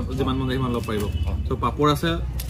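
A man's voice talking, with short breaks, over a steady low hum.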